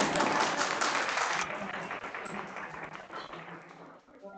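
Audience applauding, loudest in the first second and a half, then dying away.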